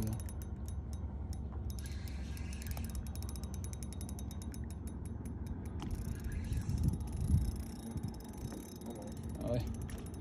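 Fishing reel clicking rapidly while a hooked smallmouth bass is being fought. A steady low rumble runs underneath, and a few heavier low thuds come about seven seconds in.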